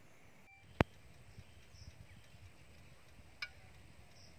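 Faint outdoor ambience with a low rumble, broken by a sharp click just under a second in and a smaller click later, with a faint short high note between them.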